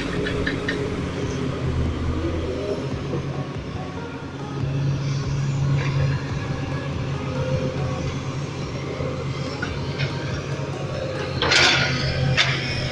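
Diesel engine of an L&T-Komatsu hydraulic crawler excavator running steadily, working harder and louder from about four and a half seconds in as the machine moves. There is a short rush of noise near the end.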